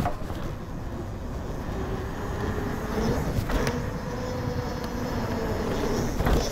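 Mountain bike rolling fast down a concrete path: wind rushing over the helmet or chest camera's microphone and tyre noise on the concrete, with a couple of sharp knocks from bumps. A faint steady hum comes in about halfway through.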